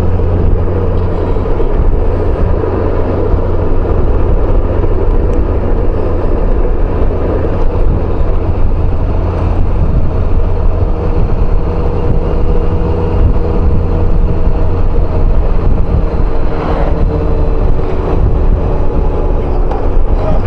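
Steady wind rush and road noise from a Honda Gold Wing motorcycle cruising at road speed, with its engine humming underneath.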